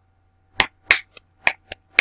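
A man clapping his hands sharply: an uneven run of about six claps, a couple of them faint, starting about half a second in.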